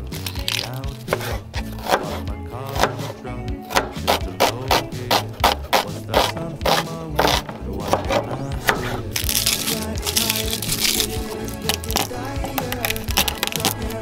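Chef's knife chopping an onion on a wooden cutting board, many quick, irregular knife strikes against the board, over background music.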